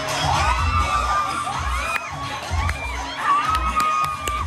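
A crowd of fans screaming and cheering, with high-pitched shouts rising and falling, over dance music with a regular bass beat.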